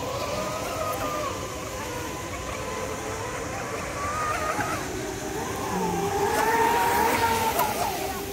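Radio-controlled model speedboat's motor whining as it races across the water, its pitch wavering up and down with the throttle, growing louder about six seconds in as it comes closer.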